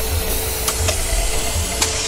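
Pressurised gas hissing steadily as it rushes from opened cylinders out through a pipe, with a few faint clicks.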